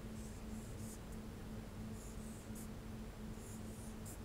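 Marker pen writing on a whiteboard: several short, faint scratchy strokes with brief pauses between them, over a low steady hum.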